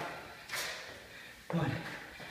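A man doing Spiderman climbs on a rubber floor mat makes a short noisy rush of movement or breath about half a second in. A moment later he counts "One."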